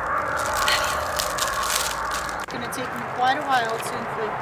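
Crinkling and rustling of a large silver foil balloon being handled and unfolded, a dense crackle of thin plastic film. A brief voice follows near the end.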